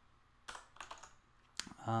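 Computer keyboard keystrokes: several separate key presses in about a second, after a short quiet start.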